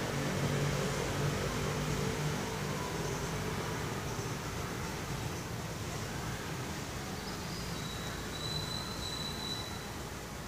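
Steady outdoor background noise with a faint low hum that fades over the first couple of seconds, and a faint, thin high tone near the end.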